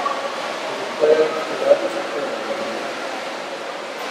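Steady rushing background noise, with a quiet voice speaking briefly about a second in.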